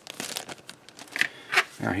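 A thin clear polythene kit bag crinkling in a series of short crackles as plastic model-kit sprues are handled and swapped.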